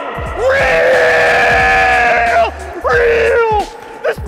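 A man's long drawn-out yell, then a shorter second one, over background music with a steady bass line.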